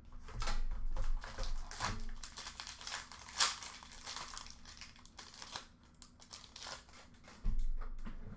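Packaging of an Upper Deck Black Diamond hockey card box being opened: a string of short crinkles and tearing rustles as the card pack's wrapper is pulled open, with a sharper rip about three and a half seconds in and a few soft knocks of the box being handled.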